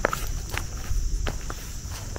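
Footsteps through grass, irregular short steps, over a steady high-pitched insect chorus.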